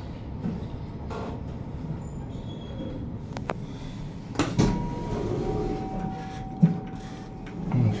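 Otis Gen2 (ReGen) machine-room-less traction lift heard from inside the car: a steady low running rumble, a sharp click about three and a half seconds in, and a thud about a second later as the doors move. Two steady electronic tones follow, a short higher one and then a longer lower one.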